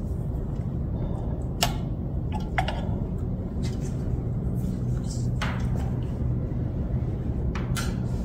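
A steady low hum with a few scattered light clicks and knocks, about four in all.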